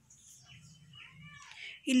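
A faint, high-pitched, wavering call in the background during a pause, with a laugh and speech starting at the very end.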